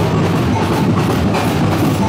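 Street percussion band playing: bass drums and snare drums beating a steady, dense rhythm.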